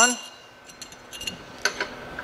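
A few small, sharp clicks and clinks as a stuffing horn and its fittings are handled and threaded onto a sausage stuffer. They come scattered, a cluster about a second in and a couple more near the end.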